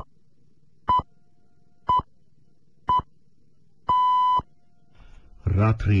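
Radio time signal pips: short beeps of one steady pitch, one each second, ending in a longer beep about four seconds in that marks the hour at the start of the news bulletin. A newsreader's voice begins near the end.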